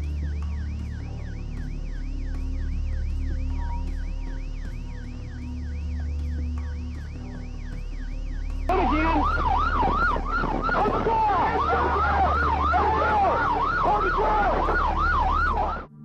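Police car sirens on a fast rising-and-falling yelp, about two and a half cycles a second. About nine seconds in, the sound turns much louder as several overlapping sirens sound together, over a steady low drone.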